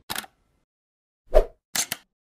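Intro-animation sound effects: a short click, then a pop about a second and a half in, the loudest sound, and a brief double tick near the end.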